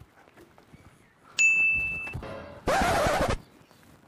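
Edited-in comedy sound effects: about a second and a half in, a bright ding sounds one steady high tone for under a second. A short burst of hissing whoosh follows, starting and stopping abruptly.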